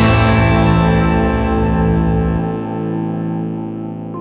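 Background music: a held, effects-laden guitar chord ringing and slowly fading, its lowest notes dropping out a little past halfway.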